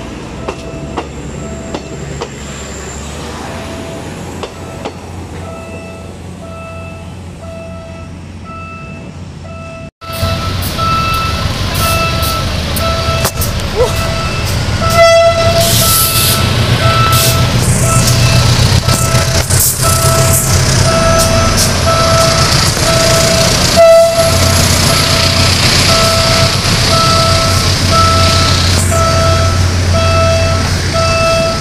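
Philippine National Railways trains passing close by. First comes the rumble of passing coaches, then, after a sudden cut, a much louder diesel train rumble at a level crossing. A crossing warning bell rings about twice a second throughout.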